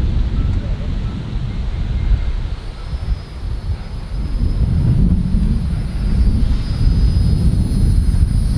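Low, gusting rumble of wind buffeting the microphone outdoors. A faint, steady high-pitched hiss joins from about three seconds in.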